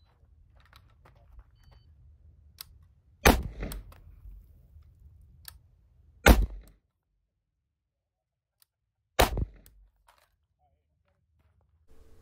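An Anderson Manufacturing AM15 Utility Pro AR-15 rifle in 5.56 firing three single shots about three seconds apart, each with a short echo after it.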